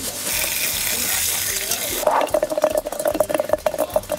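Cooking noise: a steady sizzling hiss of food frying for about two seconds, then a quick, irregular run of strokes over a steady mid-pitched tone.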